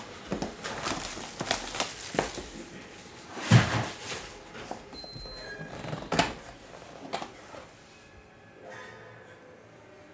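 Hands opening a 2024 Topps Archives Signature Series cardboard box: irregular scraping, rubbing and knocks of cardboard, loudest about three and a half and six seconds in, then quieter handling over the last couple of seconds.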